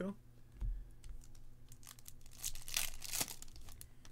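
A foil trading-card pack being torn open and its wrapper crinkled, with light clicks of cards being handled. A soft low thump comes about half a second in, and the tearing and crinkling is loudest from about two and a half to three and a half seconds in.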